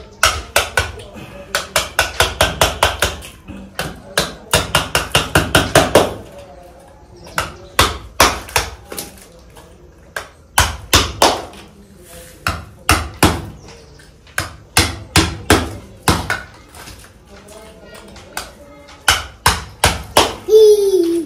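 A hammer driving a hand-held spike into a large block of ice, chipping it apart. Fast runs of sharp strikes, about five a second, give way to slower, spaced single blows.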